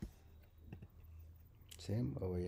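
Computer mouse clicks: a sharp click at the start, a few faint ticks, then another click a little before the end, over quiet room tone.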